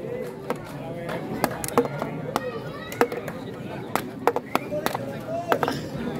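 Spectator crowd at a volleyball match: a murmur of voices with irregular sharp knocks and claps scattered through it, sometimes several a second.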